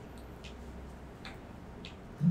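Quiet room with a steady low hum and three faint, sharp clicks less than a second apart.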